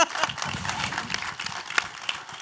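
Applause: irregular, scattered hand claps over a light haze of clapping.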